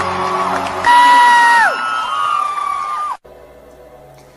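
Closing bars of a Christian worship song: a loud held vocal note that slides down at its end, over the band. The music cuts off abruptly about three seconds in, leaving a quiet gap.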